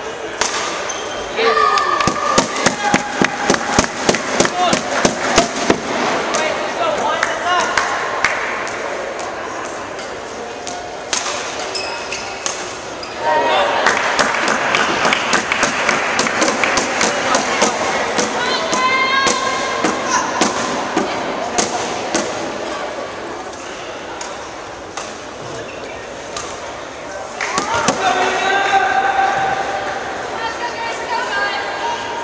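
Badminton rally in a large hall: a quick run of sharp racket-on-shuttlecock hits, then a burst of applause about halfway through and spectators shouting encouragement near the end.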